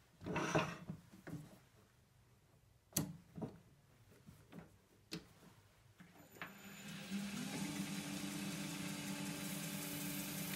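A few scattered knocks and clicks, then a wood lathe switched on about six seconds in: its motor hum rises in pitch as it comes up to speed and then runs steady.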